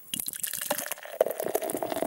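Beer trickling and fizzing: many small irregular drips and clicks of liquid.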